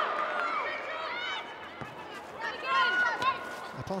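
Women footballers shouting and calling to one another on the pitch: several short, high-pitched calls.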